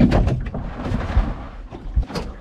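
Wind rumbling on the microphone on an open boat, with a few dull knocks as gear is shifted about on the deck.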